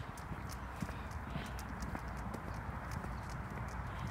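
Footsteps walking along a tarmac lane: an even tread of sharp taps, about two to three a second, over a low steady rumble.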